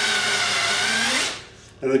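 Cordless 18 V drill running from an 18 V DC mains power supply, spinning free with a steady whine, then stopping just over a second in.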